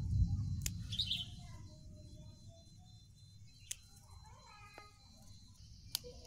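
Small birds chirping now and then, with a few sharp snips of scissors cutting green chili stems. A low rumble fills the first second, then fades.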